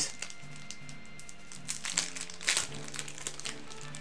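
Quiet background music, with a couple of brief crinkles of plastic card sleeves being handled around the middle.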